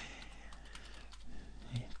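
A few faint computer keyboard keystrokes, light clicks scattered across a couple of seconds.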